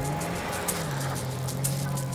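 Small hatchback car driving on a snowy parking lot: its engine revs up and down twice and then holds a steady note, with tyre noise on the snow, under a music track with a steady beat.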